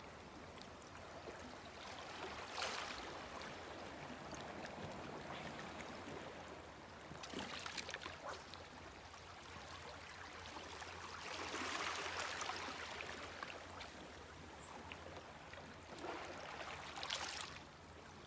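Small waves washing faintly onto a rocky, pebbly shore on a flat sea, the wash swelling and fading softly every few seconds.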